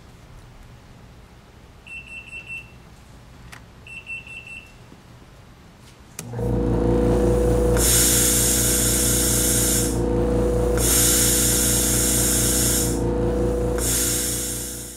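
A tire air vending machine beeps twice. About six seconds in its air compressor starts suddenly and runs steadily with a low hum. Air hisses over the compressor in three stretches of about two seconds each.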